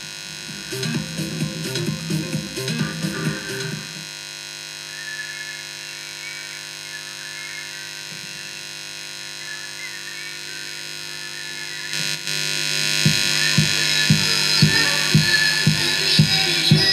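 A song playing through a homemade home-theatre speaker box and amplifier over Bluetooth, with a steady electrical hum underneath. A quiet intro gets louder about twelve seconds in, and a regular drum beat comes in near the end.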